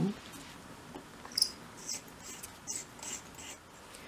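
Pin vice with a 0.75 mm drill bit being twisted by hand into a small piece of wood, giving short high squeaks about every half second from about a second and a half in.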